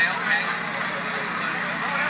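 Background chatter from a crowd outdoors: several people talking at once, none close or clear, over a steady low hum.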